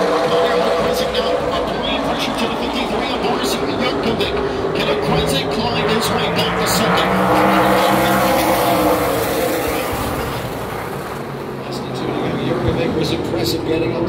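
Super late model race cars' V8 engines running hard around a short oval, the pack swelling loud as it passes the grandstand about halfway through, then fading before building again near the end.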